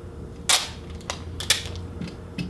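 Sticky tape pulled off a small handheld tape dispenser and torn off: a short rip about half a second in, then a few sharp clicks, the sharpest about a second and a half in.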